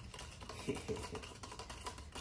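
Metal rod stirring a baking-soda-and-water solution in a plastic cup, tapping the cup's sides as a faint, quick run of light clicks, with a couple of slightly stronger knocks about a second in.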